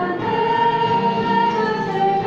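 A congregation singing a French hymn together, several voices holding long notes.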